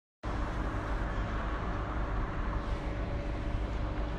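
Steady city street noise with a low rumble of road traffic, heard through a phone's microphone.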